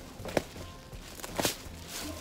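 Clear plastic packaging around a sofa cushion rustling and crinkling as it is handled, with a sharp crackle about a third of a second in and a louder one about one and a half seconds in.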